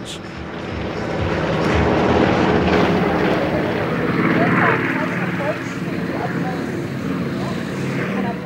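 The twin Pratt & Whitney R-2000 radial engines and propellers of a de Havilland Canada DHC-4 Caribou drone steadily as it flies low. The drone builds over the first couple of seconds and then holds.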